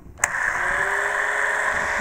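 A switch clicks, then the APQS Turbo Bobbin Winder's motor starts and runs with a steady whir.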